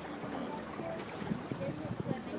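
Water washing against the hull of an engineless, current-driven Rhine cable ferry, with wind on the microphone, and a few light knocks in the second half.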